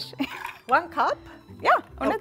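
Women's voices in short, lively exchanges, with one word repeated in sharp, rising, questioning tones, over faint background music.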